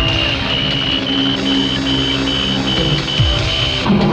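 A handheld electronic detector beeping: a short, high beep repeating about three times a second, over a low, droning synth score. A low sweep falls in pitch at the start and again about three seconds in.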